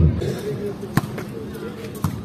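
A volleyball being struck: two sharp smacks about a second apart, over faint voices.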